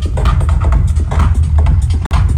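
Electronic dance music with a heavy, steady bass, played loud through a car sound system's array of speakers.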